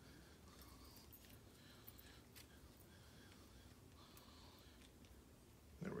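Near silence, with a few faint clicks of small metal parts as a tension bar is fitted into a padlock's keyway and the hanging key jiggles.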